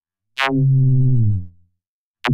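An electronic kick drum run through the Glitch 2 plugin's Stretcher effect. A single hit comes about half a second in, falls steeply in pitch, then is drawn out into a long held low tone for about a second before fading.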